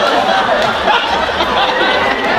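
Laughter and chuckling voices, with wavering pitch and no clear words.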